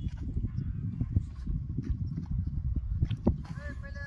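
Wind buffeting a phone microphone, with irregular thuds of footsteps on loose ploughed soil. A distant voice calls out briefly near the end.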